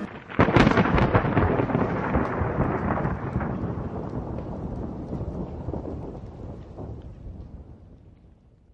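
Thunderclap: a sharp crack about half a second in, with crackles, then a long rumble that slowly fades away.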